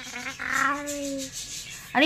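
A person's drawn-out wordless hum, held for about a second and a half and rising slightly, with cloth rubbing against the microphone close up.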